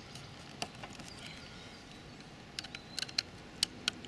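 Small flat screwdriver clicking against the screws of a PCB screw terminal block as the terminal is loosened: a few light ticks, most of them bunched together in the second half.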